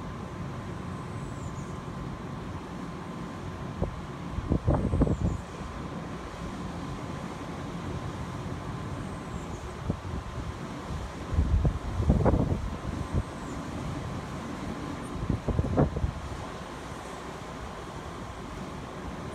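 Wind buffeting the microphone in three gusts, about a quarter of the way in, two-thirds in and near the end, over a steady rush of surf breaking on the beach below.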